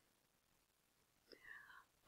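Near silence: room tone, with a faint short vocal sound from the narrator about one and a half seconds in.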